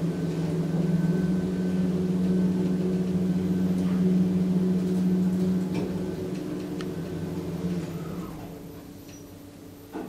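Schindler Smart 002 machine-room-less traction elevator in travel: a steady drive hum with a few light clicks. It fades over the last few seconds as the car slows and stops at the floor, with a short falling whine near the end and a sharp click right at the end.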